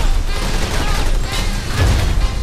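Movie gunfire and hits in a dense volley over a heavy low rumble, the sound effects of a trailer fight montage.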